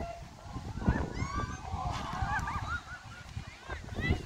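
Several high-pitched voices shrieking and cheering at once, a chorus of overlapping cries that starts about a second in and dies down after about two seconds, over wind rumble on the microphone.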